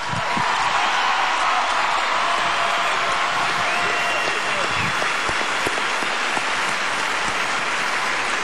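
Large arena audience applauding steadily.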